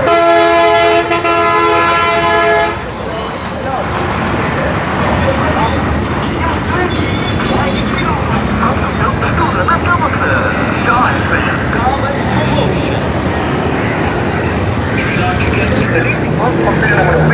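Bus horn sounding one long, steady blast of almost three seconds that cuts off suddenly, followed by the steady noise of street traffic.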